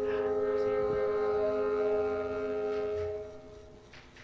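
Orchestral symphony music: one sustained chord held for about three seconds, then dying away. The composer heard it as a lament, like animals crying.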